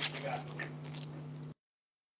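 Faint room noise with a steady low hum, then the sound cuts out abruptly to dead silence about a second and a half in.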